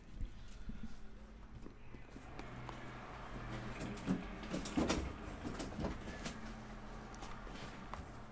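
Quiet handling of a rigid trading-card box: the lid lifted open and a plastic case of cards drawn out of its foam insert, with a few soft knocks, the clearest about four and five seconds in, over a low steady hum.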